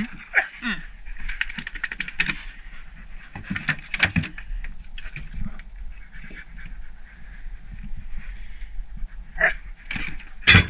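A German shorthaired pointer making vocal sounds off and on beside a boat. There are a couple of knocks on the boat's metal deck, about four seconds in and near the end.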